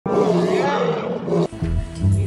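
Channel intro sting: a loud, dense sound over music that cuts off abruptly about one and a half seconds in, giving way to a low, steady music beat.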